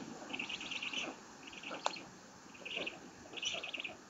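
A bird calling in short bursts of rapid repeated notes, about five bursts in four seconds.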